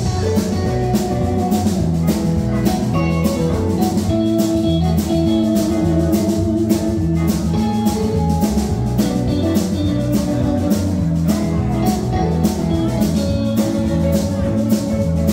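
Live rock band playing electric guitars and a drum kit, with a steady drum beat under sustained guitar and bass notes.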